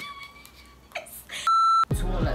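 A single loud, steady electronic bleep, about a third of a second long near the end, edited into the soundtrack with the other audio cut out beneath it, as in a censor bleep. Before it come faint, brief sounds of laughter.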